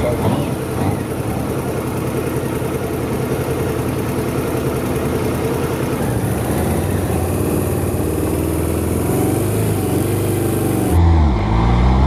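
Campagna T-Rex three-wheeler with its motorcycle engine driving off ahead of a following car, its engine note rising and falling under the road and wind noise. About a second before the end the sound changes abruptly to the engine heard up close, revving up with a rising pitch.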